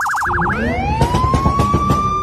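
Electronic police-style siren: a rapid yelp warble that, about half a second in, switches to a wail rising in pitch and then holding steady.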